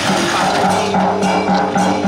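Music: a melody of held and stepping notes over a bass line that pulses about three times a second.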